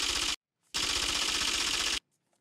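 Rapid, typewriter-like clattering sound effect in two bursts: a brief one at the start, then, after a short gap of silence, a steady run of over a second that cuts off suddenly. It accompanies on-screen caption text being typed out.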